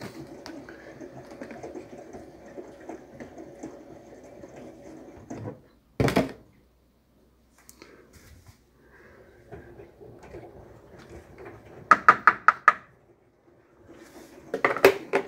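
Fabric softener poured from its bottle into a small plastic dosing cup, then the cup and bottle handled on a countertop. There is a sharp knock about six seconds in, and a quick run of about six sharp plastic clicks near the end.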